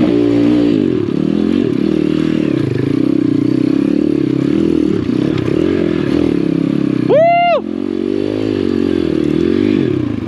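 Apollo RFZ 125cc four-stroke single-cylinder pit bike engine under load on a steep rocky climb, its pitch rising and falling with the throttle. About seven seconds in, a brief high rising-and-falling whoop cuts across it.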